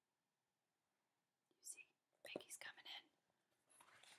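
Mostly near silence, then a faint whispered voice for about a second, a little past halfway through.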